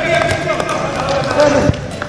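A dodgeball hitting and bouncing on an indoor sports court, with the sharpest thud about three-quarters of the way through, over players' voices.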